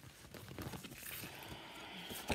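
Soft, faint rustling of paper and cloth as a printed cross-stitch pattern leaflet is picked up and handled on a work table.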